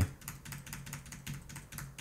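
Computer keyboard being typed in a quick, even run of keystrokes, the same short key combination struck again and again.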